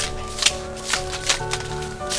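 Background music with held tones over a short hand broom sweeping the ground in brief swishing strokes, about two a second.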